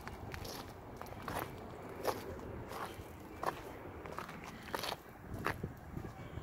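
Footsteps crunching on gravel at a steady walking pace, about eight steps.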